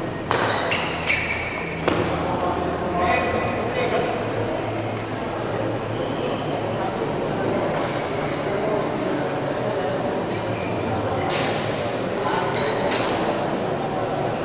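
Celluloid table tennis ball bouncing in short runs of sharp pinging clicks: a quick cluster in the first two seconds and another near the end, over a steady murmur of spectators' voices.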